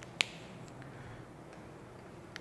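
A single sharp, short click of a whiteboard marker's cap coming off, followed by a couple of faint ticks, over quiet room tone.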